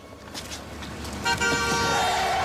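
A car horn held in one long blast from just past a second in, over a haze of street noise that grows louder.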